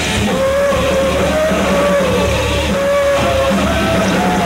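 Thrash metal band playing live at full volume: distorted guitars, bass and drums, with a sustained melodic line bending up and down in pitch above the riffing.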